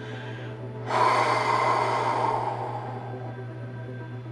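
A long, breathy intake or exhale of breath from a man reacting to a card he has just pulled. It starts suddenly about a second in and fades away over the next few seconds.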